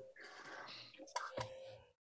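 A person's faint breathy whisper, followed by two small clicks a little after the middle.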